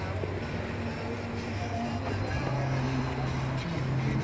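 Car heard from inside the cabin: a steady low hum and road noise, with faint music underneath.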